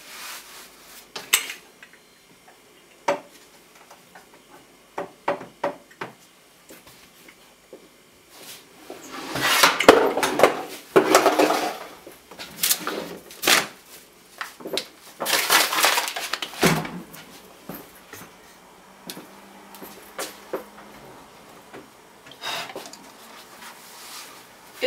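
Kitchen handling noises from working a rolled sheet of laminated croissant dough on a work surface: scattered knocks and light clicks, with two longer stretches of rustling and scraping a third and two-thirds of the way through.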